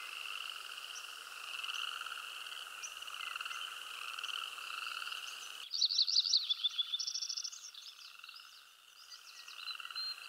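A steady chorus of croaking frogs, pulsing in two pitch bands. About six seconds in, the background changes and quick high chirping calls come in for a couple of seconds.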